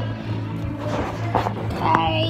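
Background music with a child's voice briefly heard, and a few knocks from the phone being handled.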